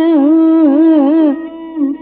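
Carnatic female vocal improvising a raga in open vowels, the held note shaken by fast wavering gamakas. After about a second and a half the phrases go on much more quietly. The sound is narrow and dull, as on an old recording.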